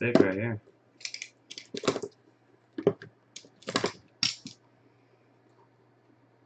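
Hands handling plastic card holders and card packaging: a handful of short, sharp clicks and knocks in the first four and a half seconds, then they stop.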